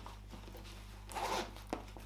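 Zipper on a side compartment of a fabric sports bag pulled open in one short stroke about a second in, followed by a small click.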